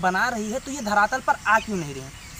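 A man speaking Hindi, talking continuously.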